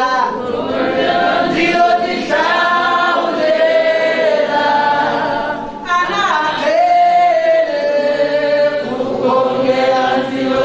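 A congregation of many voices singing a hymn together, holding long notes, with a short break about six seconds in.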